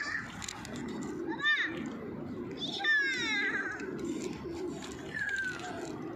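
A small child's high-pitched squeals, two short calls about one and a half and three seconds in, over a steady low murmur.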